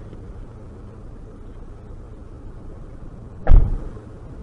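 A car door slammed shut near the end, a single thump heard from inside the car's cabin, over the low steady hum of the stationary car.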